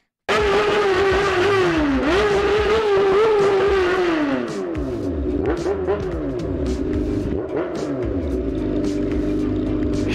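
Honda Hornet motorcycle's inline-four engine running under way, its note dipping about two seconds in, then falling away after about four and a half seconds as the throttle is rolled off, and settling to a lower, steady note.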